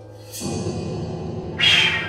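Contemporary chamber music for clarinet, piano and percussion. After a held quiet note, the ensemble comes in louder about half a second in, and a short, loud, bright accent sounds near the end.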